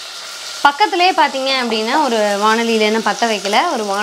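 Shallots, chillies and curry leaves sizzling in hot oil in an aluminium pressure cooker, a steady hiss. From about half a second in, a singing voice with long held notes comes in over it and is the loudest sound.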